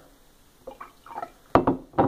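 Water trickling from a glass pitcher into a drinking glass, then a sharp knock about one and a half seconds in as the pitcher is set down on the wooden table.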